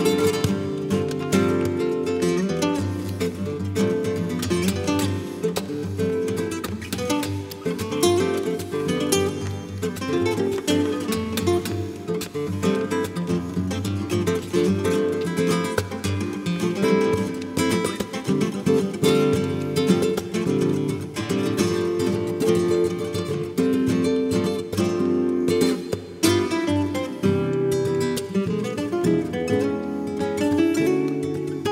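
Two nylon-string Spanish guitars playing a jazz duet, with picked melody lines over chords throughout.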